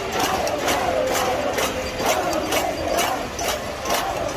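Large protest crowd chanting in unison, with a steady rhythmic beat of claps or drums under the voices.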